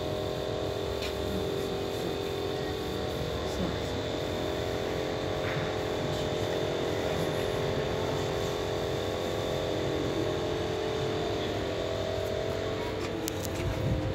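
A steady mechanical hum with several held tones, unchanging throughout, like a motor or engine running.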